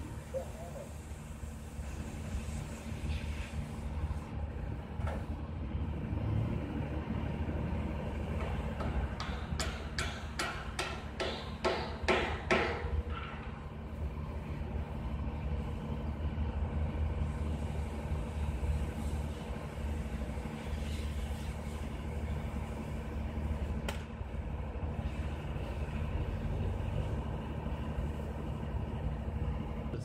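A machine engine, most likely the boom lift's, drones steadily at a constant speed. About nine to thirteen seconds in, a quick run of roughly eight sharp knocks rings out over it, as of steel being struck on the bridge work.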